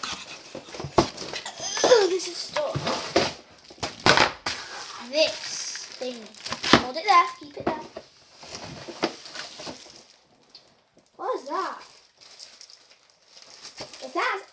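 Clear plastic bags crinkling and rustling as they are handled and unpacked, in many short sharp crackles, with a few short bits of a child's voice in between.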